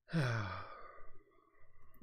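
A man's voiced sigh: one breathy exhale that falls in pitch, lasting about half a second.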